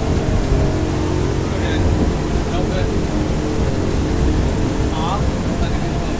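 Twin 350 outboard engines running steadily with the boat under way, a dense low drone mixed with wind and water noise.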